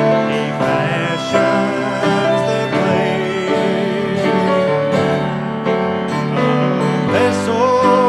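Live gospel music: piano and guitars playing, with a man's voice singing that comes in clearly near the end.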